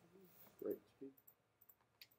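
Near silence in a classroom, with a faint, distant voice of a student calling out a short answer about half a second in and a few soft clicks.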